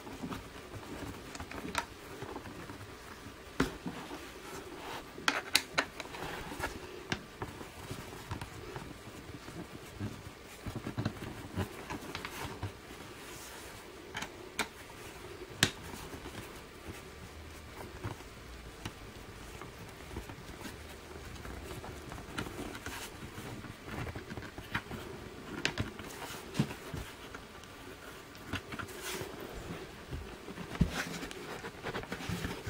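Irregular small clicks, taps and scrapes of a screwdriver and hands working the screws out of a tritium exit sign's casing, with a few louder knocks.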